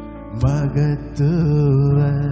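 Male lead vocalist singing a slow Tamil worship song over a sustained keyboard backing. His voice comes in about half a second in, on a line that bends up and down in pitch.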